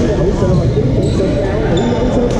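Busy badminton hall: many overlapping voices across the courts, with brief high squeaks of shoes on the court floor and a few sharp racket-on-shuttlecock hits.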